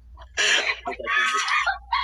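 Loud, high-pitched laughter in several bursts, starting about half a second in.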